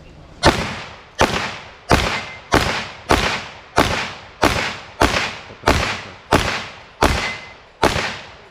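Handgun fire at steel plate targets: twelve shots at a steady pace, about two-thirds of a second apart, knocking down the plates one after another.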